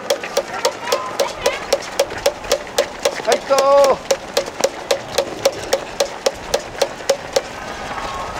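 Steady rhythmic claps from a cheering spectator, about four a second, stopping near the end. A short shout of encouragement breaks in about three and a half seconds in.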